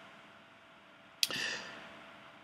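A pause with only room tone, then about a second in a sharp click and a short breathy intake that fades over about half a second: the narrator drawing breath before speaking.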